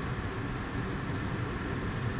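Steady low hum and hiss inside a parked car's cabin, from the climate-control fan running.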